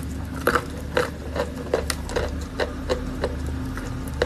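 A person chewing a mouthful of wet chalk close to the microphone: irregular wet clicks and crunches, two or three a second, over a steady low hum.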